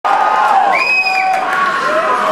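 Large concert audience cheering and shouting, many voices overlapping, with one high drawn-out call standing out about a second in.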